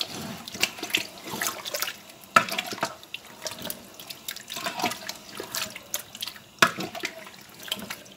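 A wooden spoon stirring raw meat chunks coated in yogurt in a large metal pot: irregular wet squelching and slapping, with a few sharp knocks of the spoon against the pot, loudest about two and a half seconds in and again near seven seconds.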